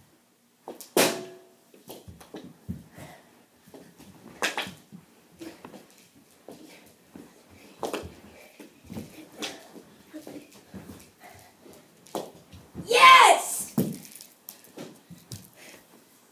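Knee hockey play on carpet: mini hockey sticks tapping and knocking the ball in a run of short, irregular clacks and scuffs, with a sharp loud hit about a second in. A child's loud shout near the end, after which the score is counted as a goal.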